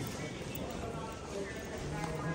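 Footsteps on a hard concourse floor, a steady patter of heel strikes, with a faint murmur of voices around.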